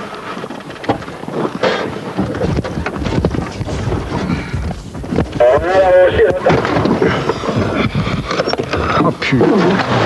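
Indistinct men's voices over a steady, rough rumbling background noise.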